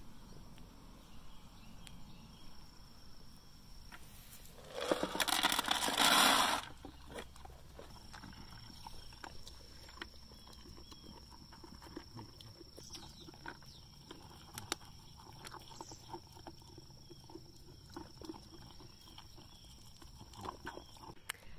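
Goat feed pellets poured from a plastic scoop into a steel bowl, a loud rattle lasting about two seconds, about five seconds in. After it, Nigerian dwarf goats eat pellets from the bowl with scattered small crunches and clicks.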